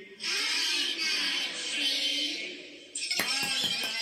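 A woman's voice in a chanted action song: a long breathy, hissing sound effect lasting nearly three seconds, then a quick run of hand claps near the end.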